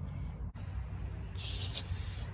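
Low, steady background hum with a brief hiss about one and a half seconds in.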